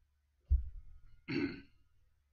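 A man clearing his throat close to the microphone, in two short bursts a little under a second apart. The first starts with a heavy low thump.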